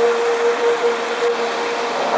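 Steady rushing noise of a rocky stream running over rapids, with one held tone of background music.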